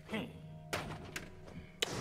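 Three short knocks spread about a second apart, the last one the loudest, after a brief snatch of Japanese anime dialogue at the start.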